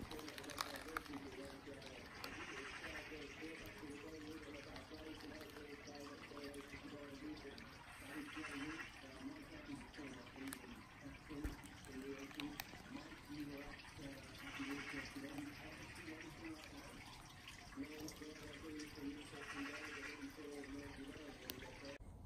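Faint, indistinct talking, with a short high trill that comes back four times, about every six seconds.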